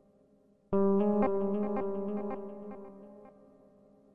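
Background music: a sustained chord strikes sharply under a second in, with short plucked notes over it, and fades away over about three seconds.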